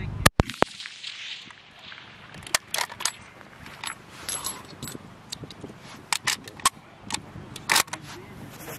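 A single shot from a K98k Mauser bolt-action rifle rebarrelled to 7.62x51mm, right at the start, with a second, weaker crack a fraction of a second later. The bolt is then worked for the next round: a run of short metallic clicks and rattles over the following few seconds.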